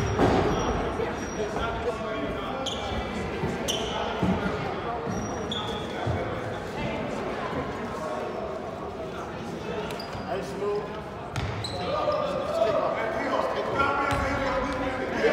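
Background voices echoing in a large gym, with a basketball bouncing on the hardwood floor a few times.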